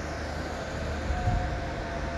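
Sewing machine running steadily, stitching gathers into a cotton sleeve piece; a low mechanical hum that grows slightly louder.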